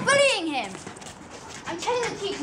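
A young person's high-pitched yell at the start, about half a second long, falling steeply in pitch, then quieter voices starting near the end.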